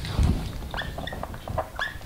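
A dry-erase marker squeaking against a whiteboard while writing: several short, high squeals, some rising in pitch.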